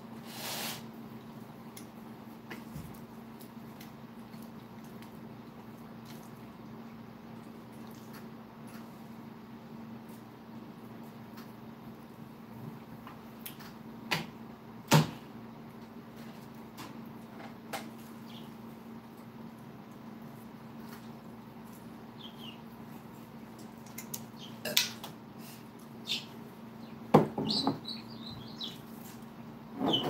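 Scattered clicks and knocks of condiment bottles and food being handled on a metal baking tray, the loudest a sharp knock about halfway through and a cluster near the end, over a steady low hum. A pet bird gives a few short chirps near the end.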